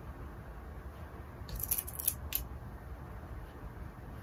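Cotton fabric rustling as it is handled and folded, with a short cluster of crisp rustles about a second and a half in.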